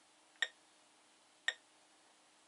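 Short, sharp click-beeps from the Science Fair Microcomputer Trainer, twice, about a second apart, one for each value of data being loaded into it from the TI-99/4A, over a faint steady hum.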